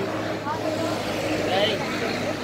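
A motorbike engine idling steadily close by, with indistinct voices over it.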